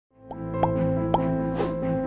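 Intro music fading in with held chords, topped by three quick rising plop sound effects and a whoosh about a second and a half in.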